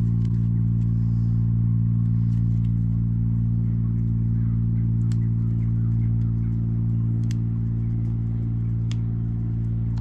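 A loud, steady low mechanical hum, unchanging in pitch, from a motor or engine running nearby, with a few faint small clicks.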